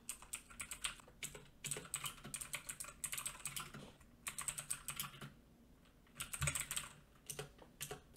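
Computer keyboard typing in quick bursts of keystrokes, with a brief pause a little past the middle.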